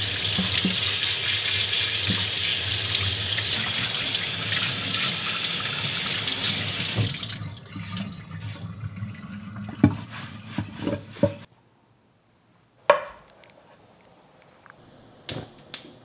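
Kitchen tap running full onto an object being rinsed by hand in a stainless steel sink, a steady splashing hiss that stops about seven seconds in. After that come light knocks and handling sounds at the sink, and two sharp clicks near the end.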